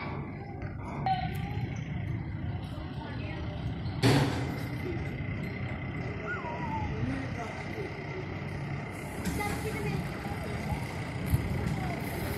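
Street ambience: distant voices over a steady low rumble, with a short loud knock about four seconds in and a faint steady high tone after it.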